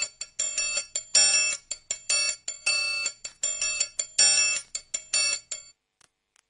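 A metal triangle struck repeatedly in a quick, uneven rhythm, each strike ringing brightly. It stops shortly before the end.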